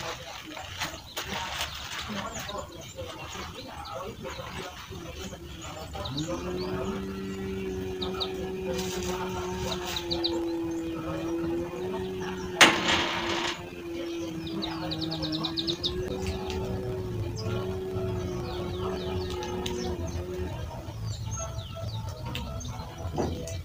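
Birds chirping in short trills over a steady, slightly wavering hum that starts about six seconds in. One sharp knock comes about halfway through.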